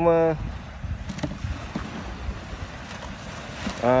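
Steady outdoor noise of wind on the microphone and waves washing on the shore, with a few faint clicks.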